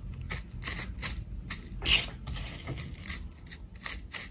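Fingertips rubbing and pushing loose hair clippings across a sheet of paper, an irregular run of short scratchy rustles with a louder scrape about two seconds in.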